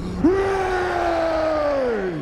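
One long, drawn-out shouted "ohhh": the voice jumps up to its note about a quarter second in, holds it while sagging slowly, and falls away near the end, over a low rumble.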